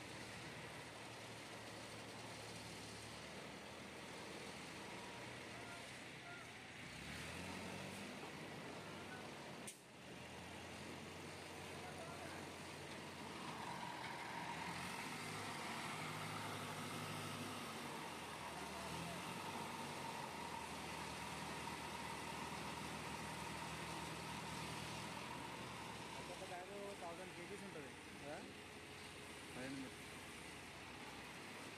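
Diesel engine of an Escorts HY12 pick-and-carry crane running, its speed stepping up and down several times as it lifts a bulk bag. A steady whine runs through the middle stretch.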